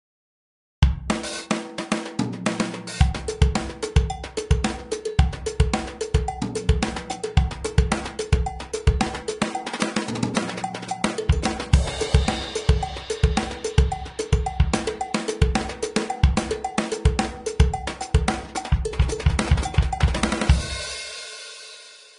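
MDrummer's sampled drum kit played live from electronic drum pads: a busy groove of kick, snare, hi-hat and cymbals, with low and high cowbells triggered from the third tom pad, soft hits giving the low cowbell and hard hits the high one. The playing starts just under a second in and ends with a cymbal ringing out and fading near the end.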